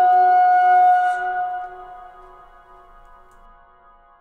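A held musical chord of several steady tones ringing on, holding for about a second and then slowly fading away.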